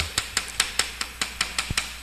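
Chalk writing on a chalkboard: a quick, irregular run of sharp taps and short scrapes as each stroke of the characters is made.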